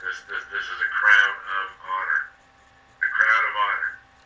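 Speech only: a person talking in short phrases with a brief pause a little past the middle, over a faint steady hum.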